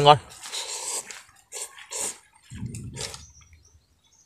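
A man slurping hot rice noodles: one long slurp just after the start, then a few shorter slurps with chewing.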